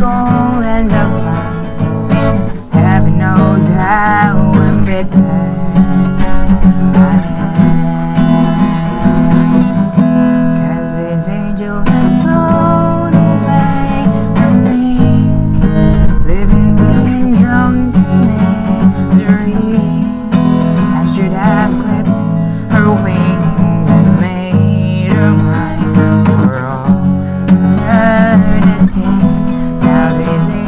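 Acoustic guitar played steadily under a man's singing voice, a solo performance of a ballad.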